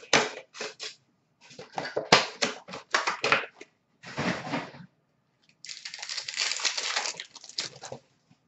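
Trading card packs and foil wrappers being handled: a run of short crinkles and clicks, then a steadier crinkling that lasts about two seconds near the end.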